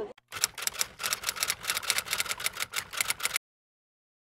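Typewriter keys clacking in a quick, uneven run of about seven strokes a second, an edited-in typing sound effect. It lasts about three seconds and then cuts off to dead silence.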